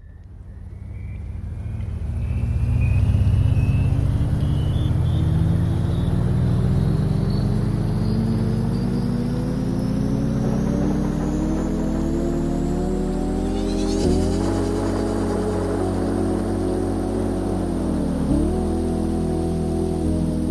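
Soundtrack laid over the video: a low, many-pitched drone with a rumble underneath that rises steadily in pitch for about fourteen seconds, then levels off, dips briefly near the end and recovers.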